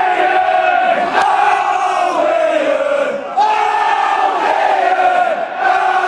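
Football supporters singing a chant together, long held lines from many voices in unison. The singing breaks briefly about three seconds in, then starts again, and there is a single sharp knock about a second in.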